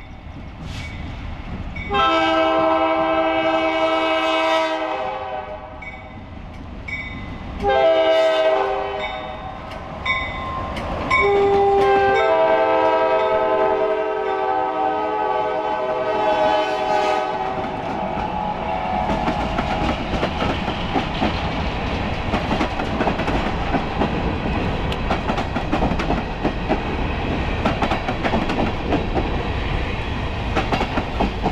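Diesel locomotive air horn on a lead Alco C430 sounding a series of chords as the train approaches: long, long, short, long, the grade-crossing signal. The Alco locomotives then pass under power, and a string of covered hopper cars rolls by, the wheels clicking over the rail joints.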